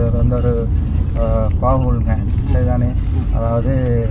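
A man talking over the steady low rumble of a car's cabin on the move.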